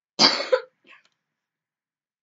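A girl coughing twice in quick succession, loudly.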